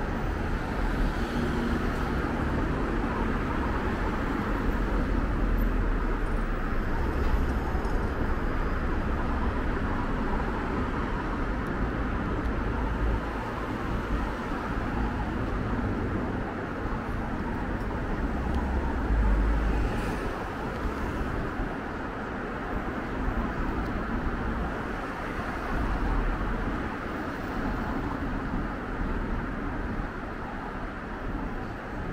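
Urban road traffic: a steady wash of engine and tyre noise from cars and taxis driving through an intersection. It swells each time a car passes close by, about four times.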